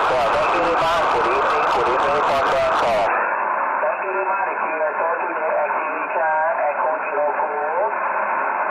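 A man's voice close to the microphone; about three seconds in it gives way to a distant station's reply coming in over the transceiver's speaker. The reply is a man's voice, thin and narrow-band, with the thin sound of a radio transmission.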